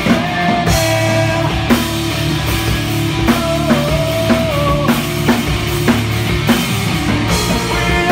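Live hard rock band playing: electric guitar, bass guitar and drum kit, with a held, wavering melody line over steady drum hits.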